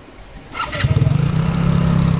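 A motorbike engine starts up close by about half a second in, then runs steadily and loudly.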